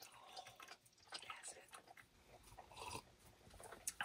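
Faint, scattered soft mouth sounds of drinking, a few quiet wet clicks in near silence.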